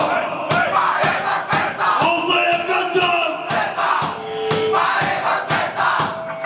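Live heavy punk band playing with shouted, screamed vocals over distorted guitar, bass and drums, the drums hitting about twice a second.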